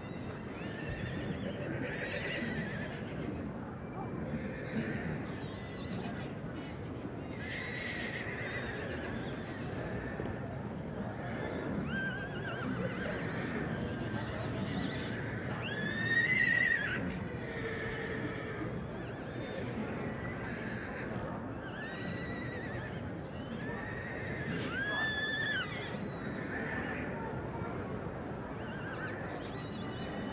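Horses whinnying several times over steady crowd chatter. The loudest whinnies come about halfway through and again near the end.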